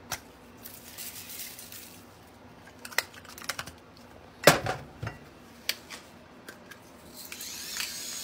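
A few sharp knocks and clicks from handling the seasoning containers, then near the end a pepper grinder starts grinding peppercorns with a steady whirr.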